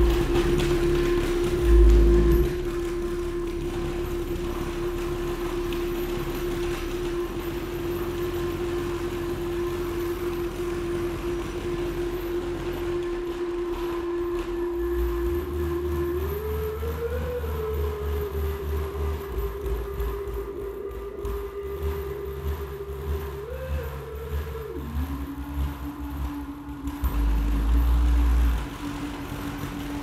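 Percussion ensemble playing experimental concert music. A single sustained tone holds steady, glides upward about halfway through and wavers, then drops to a lower pitch and holds. Under it runs a low rumble that swells near the start and again near the end.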